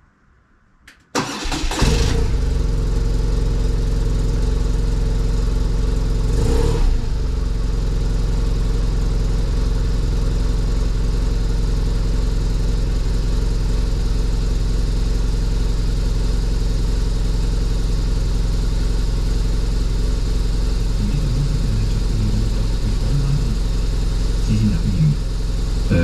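BMW R1200RT's boxer twin starting about a second in, then idling steadily, with a brief rise in engine sound a few seconds later.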